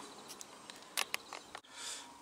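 Quiet outdoor background with a few brief, sharp clicks about a second in and a soft rustle near the end.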